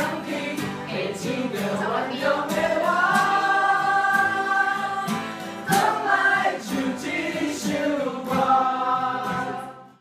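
A pop song with several voices singing together, holding long notes. The song fades out in the last moment.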